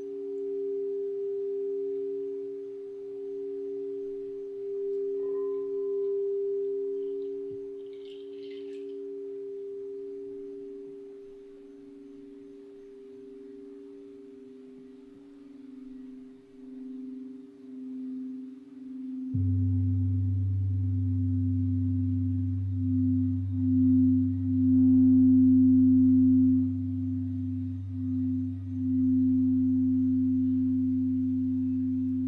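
Crystal singing bowls ringing in two steady, sustained tones a little apart in pitch, slowly swelling and fading. About two-thirds of the way in, a deep low hum suddenly joins and the lower bowl tone grows louder and pulses.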